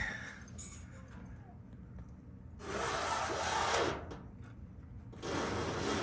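Two bursts of rough hissing, rubbing noise as a car is let down on a hydraulic floor jack onto wooden wheel cribs: a longer burst of about a second and a half in the middle and a shorter one near the end.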